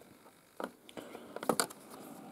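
A few faint metallic clicks and scrapes of a screwdriver turning a bolt into a threaded fitting on a radio chassis, loudest about one and a half seconds in.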